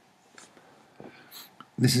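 Near-silent room tone with a few faint, brief soft noises, then a man starts speaking near the end.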